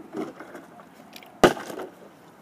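Partly filled plastic water bottle landing from a flip with a sharp knock about one and a half seconds in, after a fainter knock just after the start.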